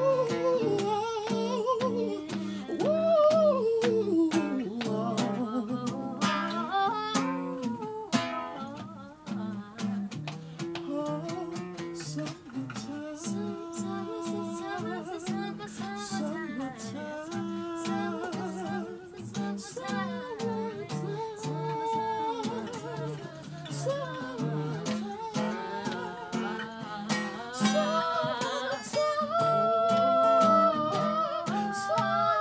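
Acoustic guitar accompanying live singing by a man and a woman, the voices gliding up and down over the picked chords.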